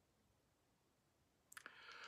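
Near silence: room tone, with a faint sharp click and a little soft noise near the end.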